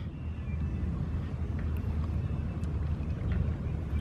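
Steady low rumble of outdoor background noise by open water, with no distinct event standing out.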